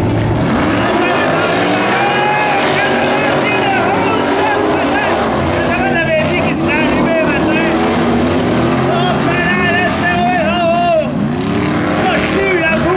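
Several modified dirt-track race cars' engines revving together off the start, each one's pitch rising and falling in overlapping sweeps as they accelerate across the track.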